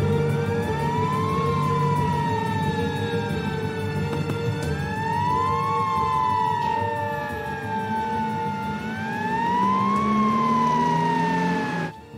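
Russian GAZelle ambulance siren wailing: each cycle rises over about a second and then falls slowly over about three, three times. It cuts off suddenly just before the end.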